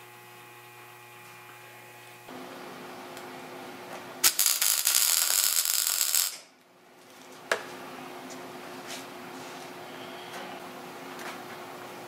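Electric arc welder tacking a stainless steel exhaust header pipe: one loud burst of welding, about two seconds long, starting about four seconds in, over a steady electrical hum.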